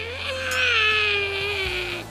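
Newborn baby crying: one long wail whose pitch sinks slowly, loudest from about half a second in.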